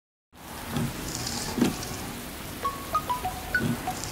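Steady rain falling, fading in just after the start, with a few soft low thuds. Near the end comes a quick run of short, high, chime-like notes at different pitches.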